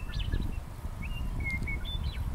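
Wild birds singing a scattering of short, high whistled notes, over a low rumble of wind on the microphone.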